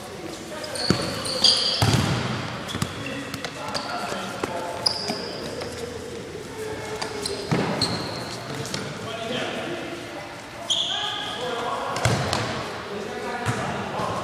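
Indoor futsal in a large echoing hall: the ball is kicked and bounces off the court a few times, sneakers give short high squeaks on the floor, and players call out to each other.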